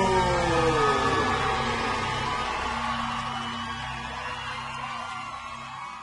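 Live song ending: a held sung note slides down and ends about a second in, then the backing music sustains a low note and fades out.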